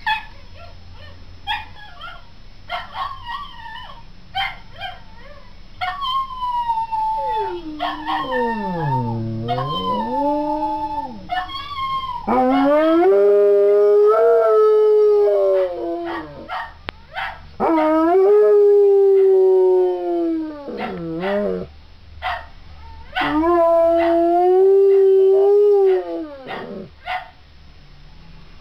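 A dog howling. Early on the calls are shorter and waver up and down in pitch. In the second half come three long held howls of a few seconds each, rising and then falling away.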